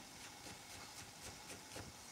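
Chef's knife slicing a carrot into julienne on a plastic cutting board: faint, quick, even taps of the blade on the board, about four a second.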